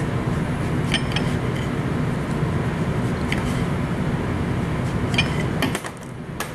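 Knife cutting a tomato on a ceramic plate, the blade clinking against the plate a few times, over a steady low rumble that drops away near the end.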